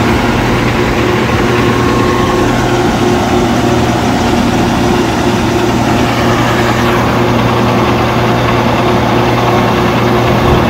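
Heavy diesel engine of a tracked TANA shredder running steadily as the machine drives up onto a low-loader trailer.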